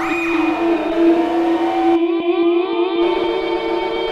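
Ambient electronic drone from a Soma Pipe played by mouth together with a Lyra-8 and a Cosmos. A steady low tone holds throughout while higher tones slide up and down like a siren, opening with a downward swoop.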